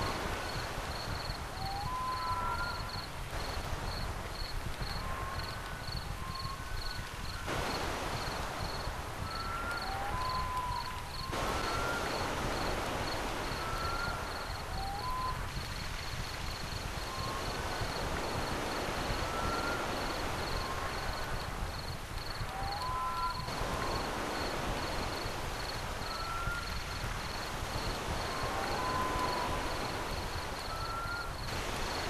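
A rapid, steady, high-pitched pulsing chirp throughout, with short whistled chirps scattered over it and a low rumbling noise underneath.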